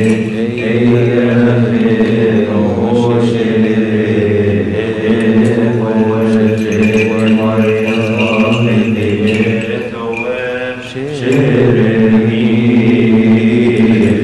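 Voices chanting a Coptic hymn in unison, slow drawn-out notes, with faint metallic ticks keeping time. About ten to eleven seconds in, the chant dips and slides in pitch as one verse ends, then comes back at full strength.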